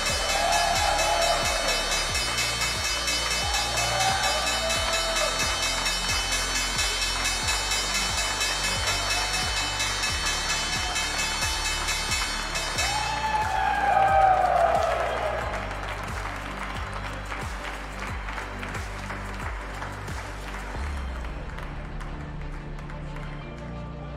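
The New York Stock Exchange's electric opening bell ringing continuously and then stopping about thirteen seconds in. Applause and a few cheers come from the people on the podium throughout, rising to a peak just after the bell stops.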